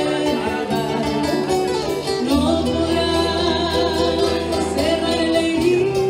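Andean folk song played live: a woman sings a sustained melody over plucked-string accompaniment and low bass notes.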